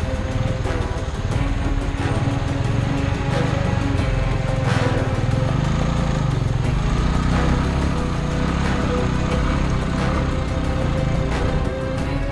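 Background music over a Royal Enfield single-cylinder motorcycle engine running, its pitch rising and then easing off in the middle.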